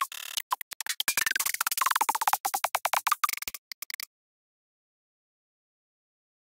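Snare and drum one-shots from a sample browser previewed one after another in quick succession, each cut short by the next, for about three and a half seconds, then stopping.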